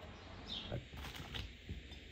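Faint handling noise with a few light clicks: hands working a plastic fog light housing, fitting rubber bands around it to hold a freshly siliconed lens.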